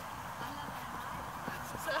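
Short honking calls, repeated several times, over steady background noise.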